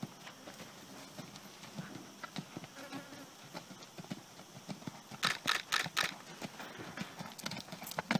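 Horse cantering on a sand arena under a rider, its hoofbeats on the sand coming as soft, repeated thuds, with a louder run of strokes a little past the middle.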